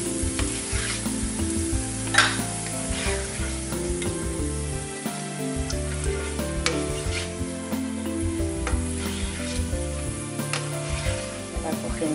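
Garlic cloves sizzling in olive oil in a non-stick frying pan, with a slotted spatula scraping and clicking against the pan as they are stirred and lifted out, golden but not burnt. One louder clack about two seconds in.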